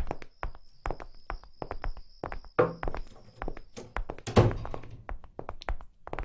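Footsteps of several people walking on a hard floor, irregular shoe and boot knocks with a couple of heavier thuds about two and a half and four and a half seconds in. A faint steady high tone runs under the first half.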